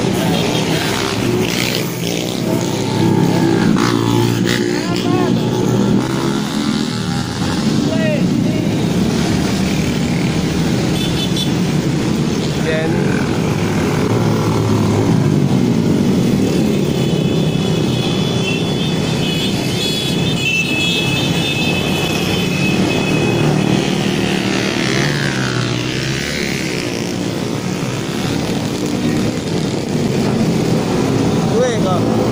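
Small motorcycle and scooter engines running and revving as a steady stream of bikes passes close by, their pitch rising and falling with each pass. A held high-pitched tone sounds for a few seconds a little past the middle.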